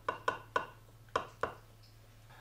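Kitchen knife cutting a brownie in a glass baking dish, its blade clicking against the glass about five times over the first second and a half.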